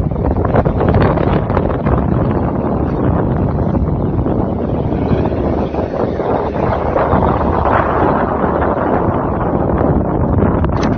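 Strong wind buffeting the microphone: a loud, rough, steady rumble with no clear pitch.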